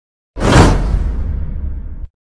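Whoosh sound effect from video editing. It starts suddenly about a third of a second in, has a deep rumble underneath, and fades away over about a second and a half.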